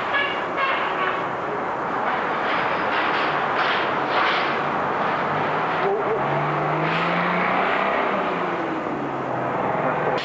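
Street noise of a Canadian Car-Brill electric trolley coach driving up and passing close by, with traffic around it; a faint low hum rises slightly past the middle.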